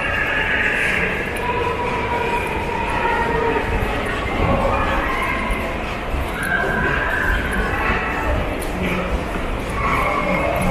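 Shopping-mall ambience: a steady mix of background voices and held, shifting tones filling a large indoor hall.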